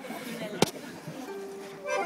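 One sharp click about a third of the way in, then a single steady musical note held from just past halfway, over faint room murmur between songs.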